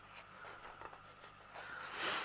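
Faint room tone with a low steady hum, then a brief soft rustle near the end as a hand brushes the edge of the diamond painting canvas.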